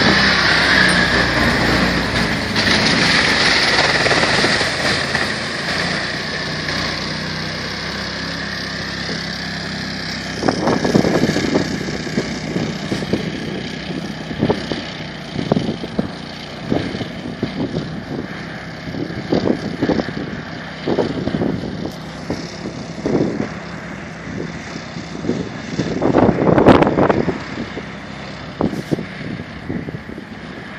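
Engine of a Borus SCOUT-Pro XL tracked amphibious all-terrain vehicle running steadily. From about a third of the way in, the engine is broken by irregular loud noisy surges. The biggest surge comes near the end.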